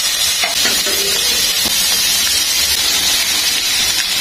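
Smash-burger beef patties sizzling in hot oil in a frying pan: a steady, even hiss.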